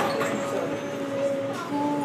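Subway train running: a steady rumbling hiss with long held whining tones that shift to a new pitch near the end.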